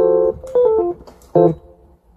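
Electronic keyboard: a held chord cuts off just after the start, then a few quick notes step downward, and a short chord sounds about a second and a half in and dies away.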